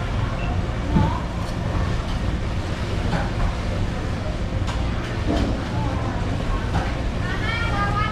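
Steady low hum of the shop's background machinery, with a few light knocks as a chef's knife cuts through a muskmelon on a wooden cutting board. Indistinct voices come in near the end.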